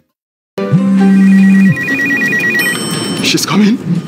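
After half a second of silence, an electronic telephone ring trills rapidly for under two seconds over a low steady tone, followed by brief voice sounds and music.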